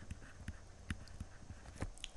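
Faint, irregular taps and light scratches of a stylus on a pen tablet during handwriting, about a handful of ticks spread over two seconds.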